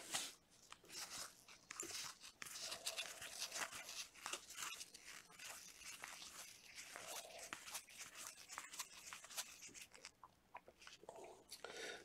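Faint rustle and soft irregular flicks of glossy trading cards being slid off a stack one after another.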